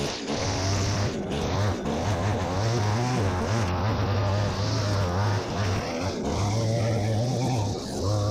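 Petrol line trimmer (whipper snipper) running at high throttle while cutting long grass. Its engine note wavers up and down and eases off briefly a couple of times.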